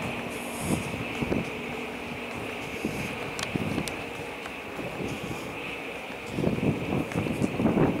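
Wind buffeting the microphone on the open upper deck of a cruise ship moving slowly, with a steady high whine underneath. The wind noise grows louder about six seconds in.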